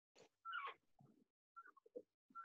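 Faint animal calls: a few short, high calls, each falling in pitch, the loudest about half a second in.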